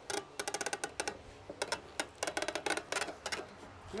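Rapid runs of light, slightly ringing clicks, several a second, in two bursts: one in the first second and a longer one from about a second and a half in to near the end.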